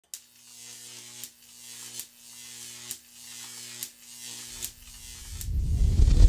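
Electric crackling sound effect: a steady humming buzz broken by a sharp zap about once a second, each followed by a swelling hiss. From about four and a half seconds a deep rumble builds and swells loud at the end.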